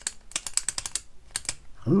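Parker Jotter ballpoint pen's push-button being clicked over and over, a fast run of about ten sharp clicks a second, then two more clicks after a short pause.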